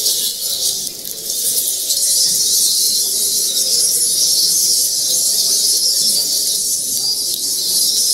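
Loud, steady high-pitched hiss, with faint, indistinct sound lower down.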